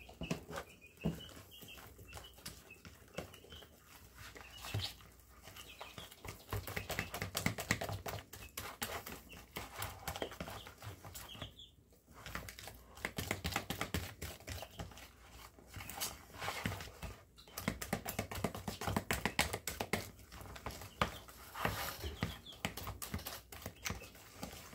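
A metal fork stirring thick pancake batter in a plastic tub: quick irregular clicks and wet scraping, in runs broken by short pauses.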